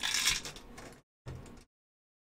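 Small lead fishing sinkers clattering as they are tipped from a plastic tub into a 3D-printed plastic compartment, loudest in the first half second and then fading. The sound cuts out completely twice.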